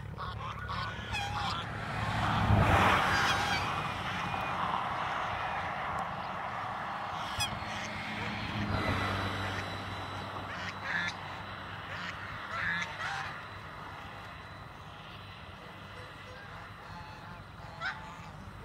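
A flock of domestic geese honking on and off, loudest about two to three seconds in, with the calling growing sparser near the end. A steady low rumble runs underneath.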